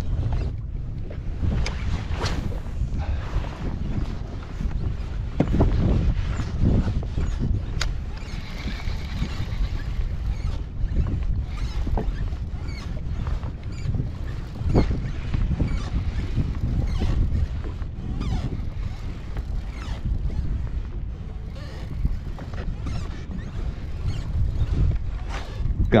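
Wind noise on the microphone and water lapping against a kayak's hull, with scattered small knocks and clicks.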